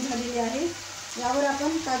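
Grated carrot halwa sizzling in a non-stick kadai and being stirred with a wooden spatula as the added sugar melts into it, with a steady hiss throughout. A woman's voice talks over it, louder than the sizzle, pausing briefly about a second in.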